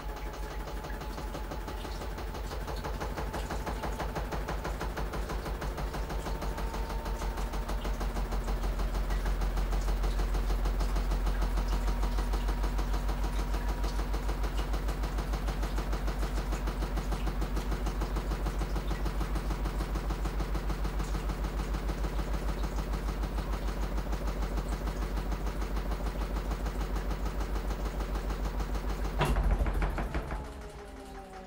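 Washing machine running mid-cycle: a steady low hum from the motor and drum with a fast, even pulse, growing louder over the first ten seconds and then holding. It stops suddenly with a sharp click about a second before the end.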